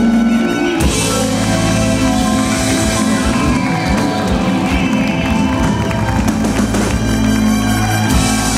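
Live rock band with a horn section of trumpet, saxophone and trombone, drum kit and electric guitars playing loudly.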